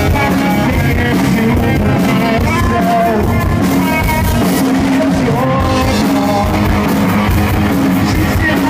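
Live rock band playing loud: a male vocalist sings into a microphone over electric guitar and drums.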